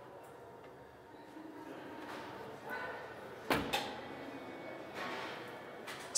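Rear seatback of a Lada Vesta sedan being folded down after its release lever is pulled: faint rustling and handling noise, with two sharp knocks in quick succession about three and a half seconds in.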